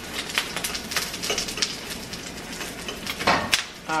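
A metal fork tapping and scraping against a nonstick frying pan while scrambling eggs: irregular clicks, several a second, with two louder knocks near the end. Under them runs a low sizzle of the eggs frying.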